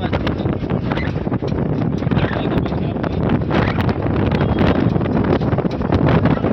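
Wind buffeting the microphone from riding in the open back of a moving vehicle, a loud, steady rush with constant gusty crackle, over the vehicle's low road noise.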